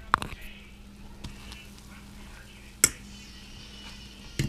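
Kitchen handling sounds at a stove: a few short, light clicks and knocks, the loudest near three seconds in, over a steady low hum.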